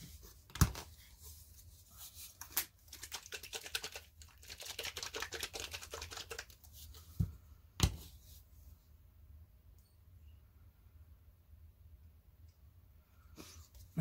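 Handling noises at a craft table: a sharp knock about a second in, then a few seconds of rapid crinkly scratching and rustling, then a second sharp knock.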